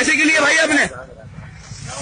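A man speaks for about the first second. After that there is a soft hiss over a low rumble.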